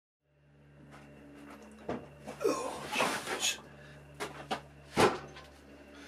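A large log being handled on a wood lathe: a series of knocks and bumps, the loudest about five seconds in, over a steady low hum.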